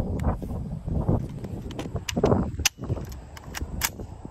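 A rifle and its magazine being handled: a run of sharp metallic clicks and rattles, several close together in the second half, over low rustling handling noise.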